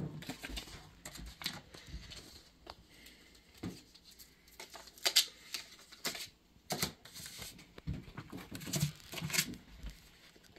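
Sublimation transfer paper rustling and crackling as it is peeled off a freshly heat-pressed wooden piece and handled, in scattered short crackles, with a few light knocks as the wooden pieces are set down on the table.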